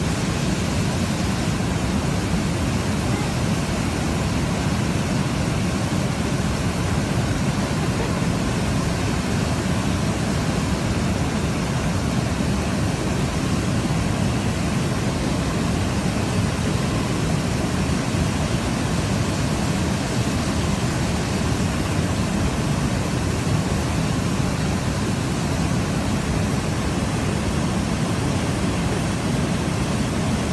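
Wide waterfall rushing steadily, an even noise with no breaks.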